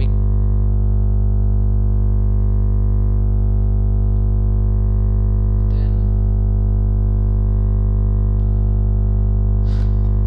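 Loud, steady electrical hum-buzz: a low drone with a stack of even overtones that never changes, a recording fault that swamps the audio. A faint brief voice sound comes through about six seconds in and again near the end.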